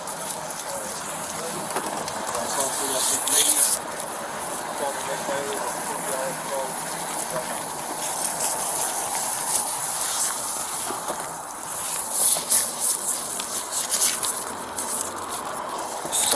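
Plastic crime-scene tape being handled and tied off, crinkling and rustling in two spells, about three seconds in and again about twelve seconds in, over a steady hiss with faint voices in the background.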